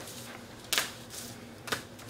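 Paper being handled: two short, crisp rustles about a second apart as a sheet or envelope is moved in the hands.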